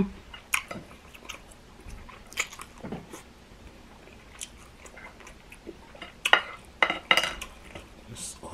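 A person chewing food close to the microphone: scattered wet smacks and clicks of the mouth, the loudest cluster about six to seven seconds in.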